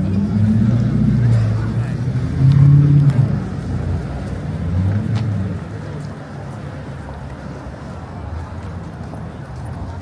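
Busy city street ambience at a crossing: a vehicle engine and passers-by's voices. A loud low sound rises and falls for about the first five seconds, then settles to a quieter, steady traffic hum.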